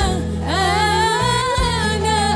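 A woman singing with a live band: she glides up into a long held note with vibrato over a bass line.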